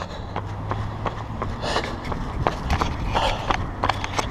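Running footsteps on an asphalt road, about three strides a second, over a steady low rumble of wind and handling noise on the handheld camera, with a couple of breaths.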